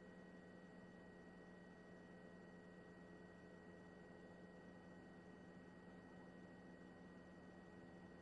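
Near silence: a faint, steady electrical hum made of a few fixed tones.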